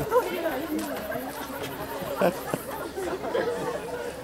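Several voices talking over one another in indistinct chatter, with a brief sharp knock about two and a half seconds in.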